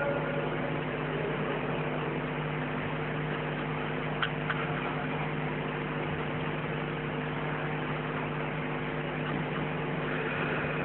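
A steady hum of several low tones over a constant hiss, with two faint clicks about four seconds in.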